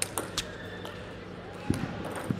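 Table tennis ball clicking sharply off bat and table three times in quick succession as a rally ends, then a low thud near the end, over the murmur of a large hall.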